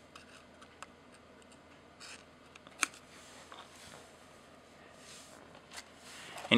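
Faint hand-handling noise from a sensor-cleaning swab being worked over a Nikon DSLR's open sensor: soft rubbing with a few small clicks, the sharpest nearly three seconds in.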